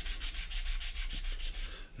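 Sanding sponge rubbed lightly over a glued seam on a plastic Spitfire model kit, a quick train of short, even scratching strokes as the joint is smoothed flush.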